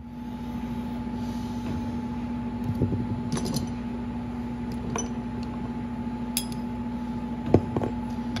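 Steel wrenches clinking against each other and tapping on a workbench as they are picked up and sorted: a handful of short, sharp clinks spread out over several seconds. A steady hum runs underneath.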